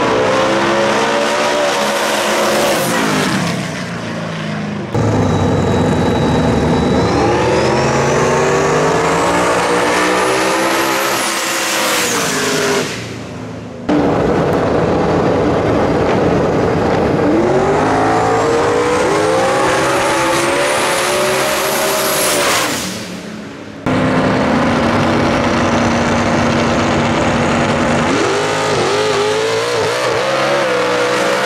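Drag race cars accelerating hard down the strip at full throttle, engine pitch climbing and dropping back through the gear changes with a high whine rising above it. Several runs follow one another: each fades as the car pulls away, then the next starts abruptly.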